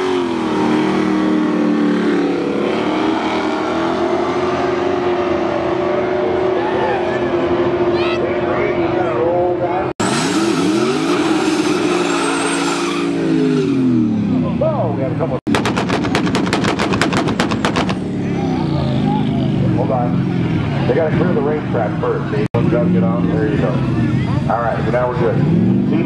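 Drag cars' engines at high revs at the starting line, held steady, then falling and climbing in pitch over several edited shots. About halfway through comes a rapid run of sharp pops for about two seconds.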